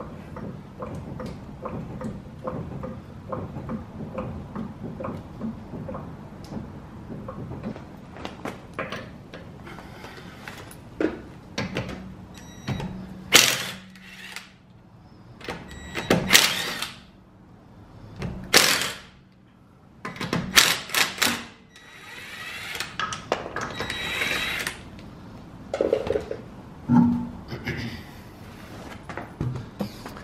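Cordless impact wrench loosening a car wheel's lug nuts in several short, loud bursts from about the middle on, with a longer run near the end as a nut spins off. Before that come smaller clicks and handling clatter of tools and parts.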